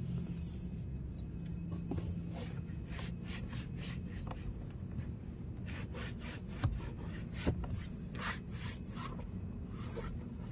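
Microfiber cloth wiping over the plastic trim of a car door in a run of quick rubbing strokes. Two sharp clicks come about two-thirds of the way through, about a second apart.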